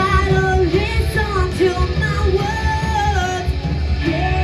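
Live rock music: a lead vocal sings a melody with long held notes and bends, over a band with a heavy low end.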